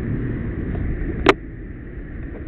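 Steady low rumble of street traffic and wind on the microphone of a moving camera, broken by one sharp knock a little past halfway, after which the rumble is quieter.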